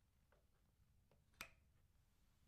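XLR microphone cable plug pushed into the front combo input of a Focusrite Scarlett 2i2 audio interface: a few faint scrapes and ticks, then one sharp click as the plug seats, about one and a half seconds in.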